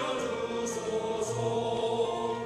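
Men's choir singing a sacred song in held chords.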